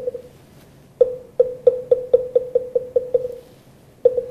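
Moktak (Buddhist wooden fish) struck once, then after a second a run of about ten strokes that speed up and die away, with one more stroke at the end: the moktak roll that opens the chant.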